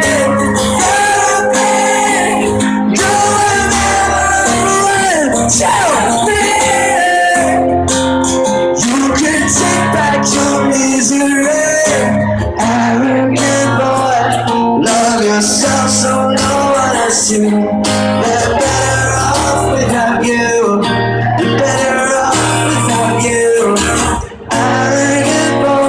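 A steel-string acoustic guitar being strummed while a man sings, performed live and amplified.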